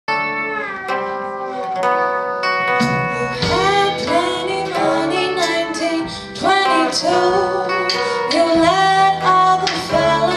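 Live blues band playing: slide guitar played flat on the lap and harmonica over bass and drums, with a woman singing.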